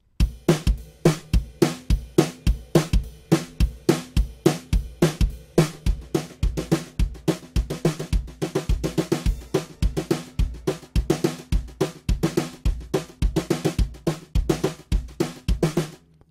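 Sampled brushes drum kit from Toontrack's Americana EZX playing a steady laid-back groove: kick drum on a regular beat with brushes on snare and cymbals.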